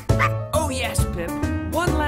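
A cartoon dog's voice giving several short yips and barks over children's music.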